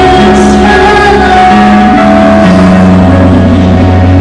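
A woman singing a worship song into a microphone over loud backing music, holding long notes over a steady bass.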